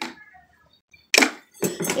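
A single sudden clatter of hard household objects being handled, a little past a second in, with mostly quiet either side of it.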